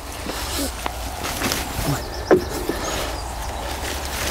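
Footsteps and handling noises as a plastic crate of seedlings is carried along a wooden board and lowered, with a few short knocks and clicks over a steady low rumble. A man murmurs briefly a few times.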